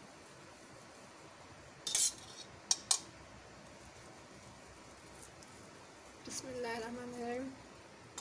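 Metal spoon clinking and scraping against an iron tawa as oil is spread over a paratha: a few sharp clinks about two seconds in and again just before three seconds, over a faint steady hiss.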